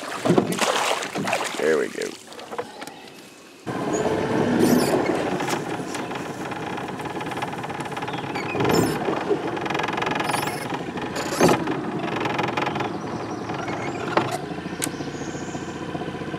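Water splashing as a fish is dipped up in a landing net beside the boat. About four seconds in the sound changes abruptly to a boat motor idling steadily, with a couple of sharp knocks.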